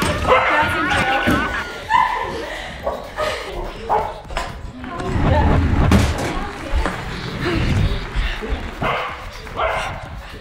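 Excited voices of children at play, a dog barking, and heavy thumps about halfway through.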